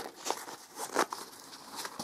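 Handling of a small zippered fabric pouch: light rustling of the cloth with a few separate soft clicks, such as the metal zipper pulls knocking as it is opened.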